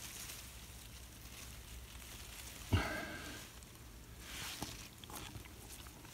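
Faint rustling of grass and leaves as hands part the plants and pick wild strawberries, with a short louder sound a little before halfway and a few small ticks near the end.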